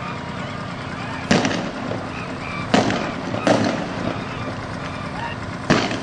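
Four shotgun blasts fired at protesters by police, at uneven intervals, over street noise and voices. Live rounds from a hunting shotgun.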